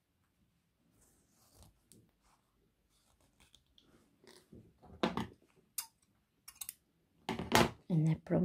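Cotton fabric and sewing thread handled close to the microphone: near-quiet at first, then soft rustling with a few short, sharp crackles in the second half.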